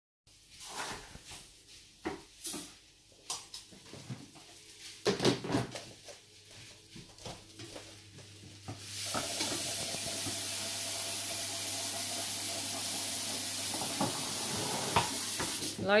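Food being stir-fried in a frying pan with a wooden spatula: scattered clatter and scraping of the spatula in the pan, then a steady sizzle that sets in about nine seconds in and holds.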